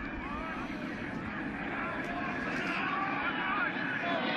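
Football stadium crowd noise: a steady din of many voices with no single voice standing out, growing slightly louder.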